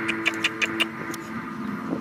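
About six sharp taps in quick succession during the first second or so, over a steady low drone.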